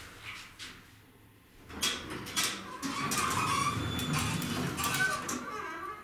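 Elevator car and hoistway doors sliding open on arrival at a landing, with the door operator running. The sound starts about two seconds in and continues steadily for about four seconds.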